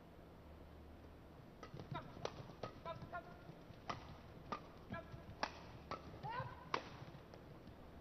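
Badminton rally heard faintly: rackets striking the shuttlecock about every half second, a dozen or so sharp hits, with short squeaks of shoes on the court floor. The hits start about a second and a half in and stop about seven seconds in.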